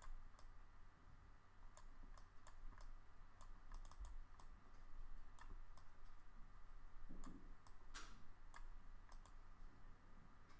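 Faint, irregular clicks from a computer mouse being used to drag and place page elements, over a low steady hum.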